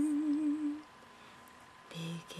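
A woman's unaccompanied singing voice holds a note with vibrato that fades out under a second in. After a short pause, a low hummed note starts near the end.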